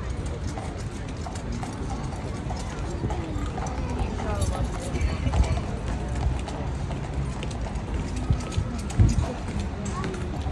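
Heavy cavalry jackboots marching, a steady clop of footfalls that grows louder as they come close, over the chatter of a crowd.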